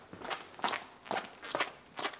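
Footsteps of a person walking across the floor at an even pace, about two steps a second.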